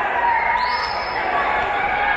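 Several voices shouting and calling out over a fight in a ring, with dull thuds of gloved blows and feet on the canvas.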